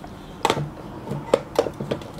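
Clicks and knocks of a metal enamel watercolour box and other supplies being set down and shifted in a drawer, several sharp knocks a fraction of a second apart, some with a brief metallic ring.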